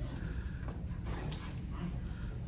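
Goldendoodle whimpering softly and excitedly while greeting its owners.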